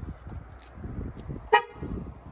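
Wind buffeting the microphone, cut by one short, loud honk about one and a half seconds in.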